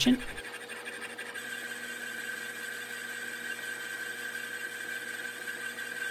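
Metal lathe running with a boring bar taking a power-fed cut inside a cylinder casting: a steady machine whine over a faint hiss of cutting, with a higher tone growing stronger about a second in.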